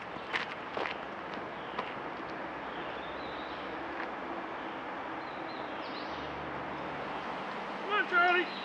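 Steady outdoor background noise of a wooded track, with a few light footsteps on gravel in the first second.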